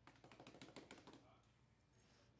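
A quick run of faint clicks and taps lasting about a second, in near silence.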